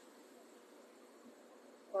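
Faint steady room hiss in a pause in speech, with a voice starting a word at the very end.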